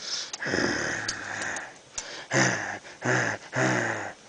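Chihuahua puppies growling as they play-fight: one long growl, then three short ones in quick succession in the second half.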